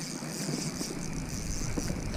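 Spinning reel being cranked to retrieve a hooked ladyfish, with small irregular clicks over a steady low rumble.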